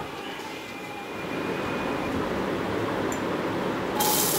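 Whole spices frying in hot oil in an aluminium pressure cooker on a gas burner: a steady, low sizzle and hiss while the tempering cooks.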